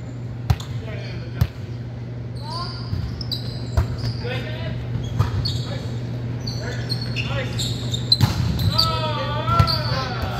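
Indoor volleyball being played: several sharp slaps of hands on the ball and other impacts echoing in a gym, with players calling out, one voice rising near the end, over a steady low hum.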